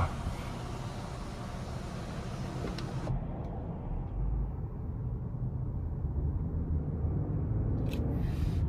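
Steady low road and drivetrain rumble inside the cabin of a 2023 Lincoln Aviator Black Label at cruising speed. A high hiss over it drops away suddenly about three seconds in.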